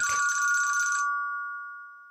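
A desk telephone ringing once: a steady two-note ring that holds for about a second and then fades away.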